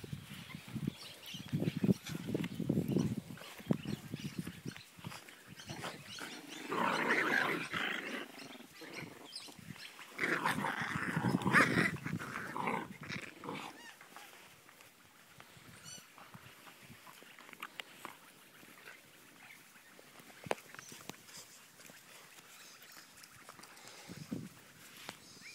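A Jack Russell terrier play-growling in several bursts through the first half, the two loudest a third and a half of the way in, then falling quiet.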